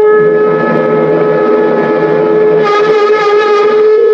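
Background music: a conch shell blown in one long held note, with a second wavering voice or instrument line joining about three seconds in.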